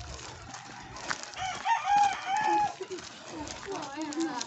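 A rooster crowing once, a drawn-out call in a few linked notes starting about a second and a half in; it is the loudest sound here.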